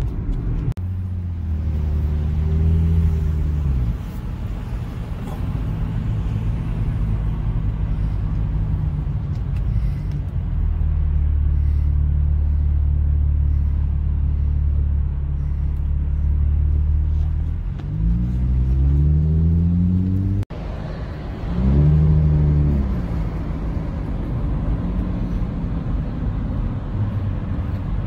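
Car engine and road rumble heard from inside the cabin while driving, the engine note rising as the car accelerates, most clearly about two-thirds of the way through. The sound cuts out for an instant just before that last rise.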